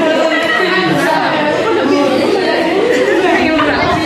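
Chatter of a group of people talking over one another in a hall.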